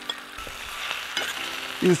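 Mutton spleen, liver, kidney and fat sizzling in hot oil in a steel pan as they are stirred, with a steady frying hiss and a few small clicks.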